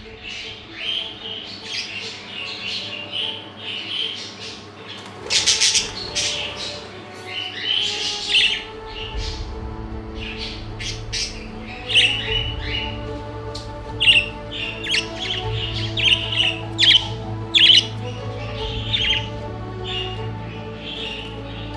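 Young budgerigars chirping and squawking in quick, sharp calls throughout, over steady background music. The loudest cluster comes about six seconds in.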